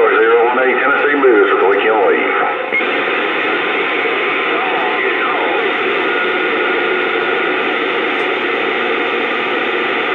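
CB radio on channel 28 (27.285 MHz) receiving a garbled, distorted voice for the first few seconds. About three seconds in the voice stops and the signal drops, leaving steady static hiss.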